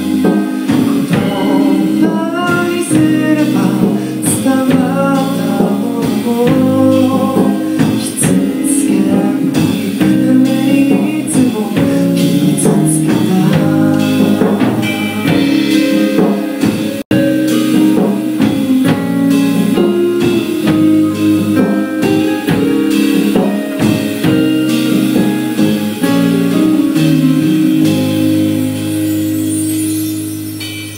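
A live rock band playing: a singer over drum kit and guitar. The sound drops out for an instant just over halfway through.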